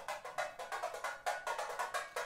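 Tamborim played with a stick in a fast run of sharp, high strikes, several a second, heard as playback over a hall's loudspeakers.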